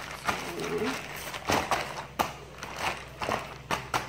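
Plastic zip-top bag of chicken in marinade crinkling in several short rustles as hands press it flat on a countertop.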